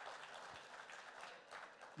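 Faint applause from an audience, thinning out near the end.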